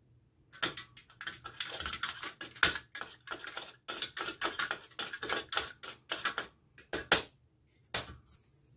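A nail stirring a black paint wash in a small container, clicking and scraping rapidly and unevenly against its sides as the wash is mixed darker.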